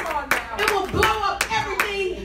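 Irregular hand claps, with excited voices calling out, in response to the preaching.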